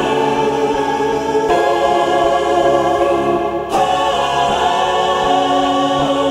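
Music: a wordless choir holding sustained chords, moving to a new chord about a second and a half in and again just before four seconds.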